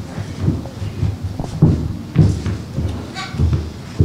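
Irregular low thumps and shuffling of children's footsteps as they walk off the platform, in a large hall, with a brief faint child's voice about three seconds in.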